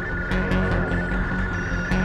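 Experimental electronic music played live: a steady high drone over a pulsing low bass, with sharp clicks scattered through it.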